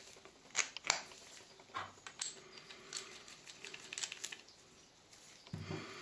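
Faint, scattered clicks and taps of metal parts being handled: an airgun regulator being fitted into a PCP air cylinder tube by gloved hands, with a few light rustles in between.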